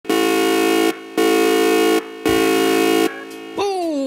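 Three loud, steady horn-like blasts, each just under a second with short gaps between them. Near the end a voice starts singing as the opening music begins.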